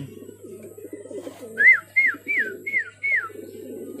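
Racing pigeons cooing in a low, steady murmur. About halfway through comes a quick run of five short, high chirps.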